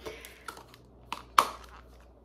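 Clear plastic packaging of a wax bar handled in the hands: a few light clicks and crackles, the loudest about one and a half seconds in.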